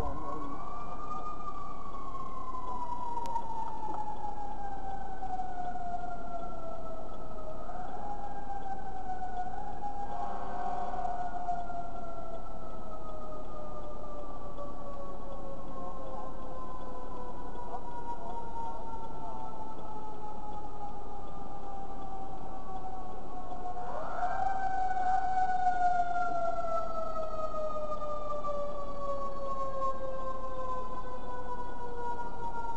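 Fire engine siren that winds up quickly and then slowly falls in pitch over many seconds. It winds up again about eight seconds in and again about two thirds of the way through.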